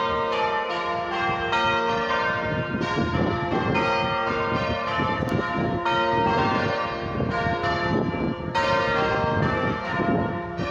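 The 14 cwt John Taylor & Co ring of six church bells tuned to F, being change-rung: bell strikes follow one another at an even pace, each one ringing on under the next.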